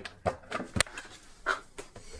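Workshop product bottles and aerosol cans being handled and set down on a workbench: a few light knocks and clicks, the sharpest about a second in.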